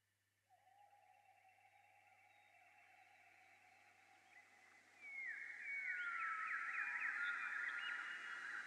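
Quiet electronic synthesizer jam: a steady tone fades in, joined by higher sustained tones, then about five seconds in a louder falling glide comes in with quick rising chirps, about three a second.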